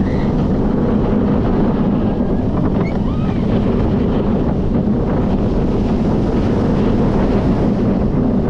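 Steady wind rushing over the microphone with the rumble of an Intamin launched steel coaster's train running along its track at speed.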